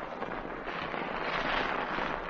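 Crackling hiss of an old radio transcription recording's surface noise with no voices, swelling slightly in the middle.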